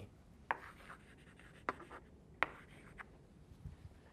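Chalk writing on a blackboard: faint scratching with a few sharp taps as the chalk strikes the board, the clearest about half a second, a second and a half, and two and a half seconds in.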